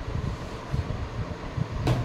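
Steady low background noise of a running fan, with a short sharp click near the end.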